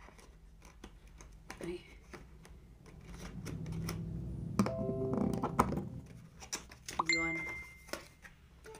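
Cardboard box being handled and opened close to the microphone: a run of small clicks and taps, with rubbing and scraping that build up in the middle.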